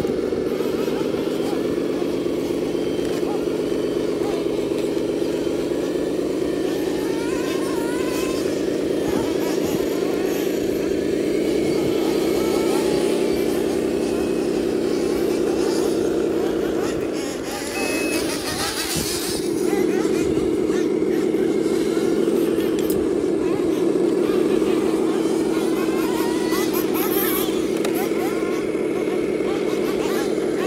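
Radio-controlled 1/14-scale tipper truck driving loaded up a dirt slope, its drive giving a steady pitched drone that wavers a little in pitch. The drone drops away briefly a little past halfway, then comes back.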